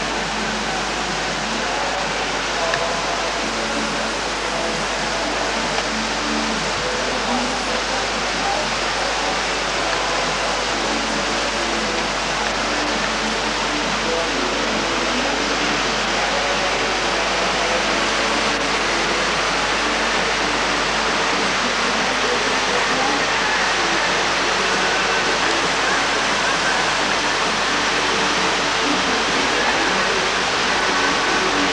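Steady rush of whitewater pouring over the rocks and drops of a slalom canoe course, an even noise that holds at the same level throughout.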